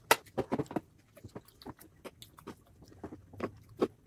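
Close-miked chewing of a mouthful of soft fried rice and noodles: a quick, uneven run of short wet clicks, densest in the first second. A spoon works through the noodles on the plate near the end.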